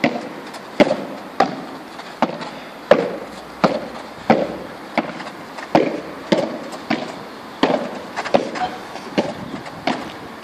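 A run of sharp knocks or pops at a fairly even pace, about one every two-thirds of a second, some with a short ring after them.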